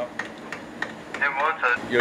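A few sharp, scattered metallic clicks from a hand tool being worked on a large diesel generator engine during a service, followed by a man's voice near the end.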